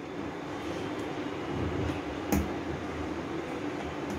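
A steady mechanical hum and hiss with one faint steady tone, like a fan or appliance running, and a single soft knock a little after the middle.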